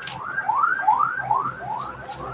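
A small animal's chirping call: a quick run of short chirps, about four a second, each rising then falling in pitch, fading away toward the end.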